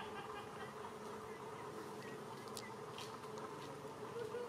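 An insect buzzing steadily at one pitch, with two faint clicks a little past halfway.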